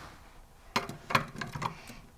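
A few light clicks and taps as miniature toy drink cans are picked off a toy shop shelf and put into a small wire toy shopping trolley, mostly in the second half.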